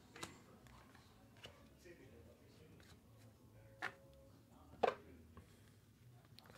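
Chrome trading cards being handled and flipped through by hand: a few light clicks of card stock against card stock, the sharpest two about four and five seconds in.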